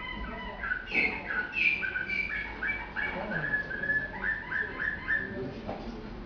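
Canary singing in a show cage: a string of clear whistled notes, mostly falling in pitch, with a run of short repeated notes about three a second in the second half, heard as a recording played back from a TV screen.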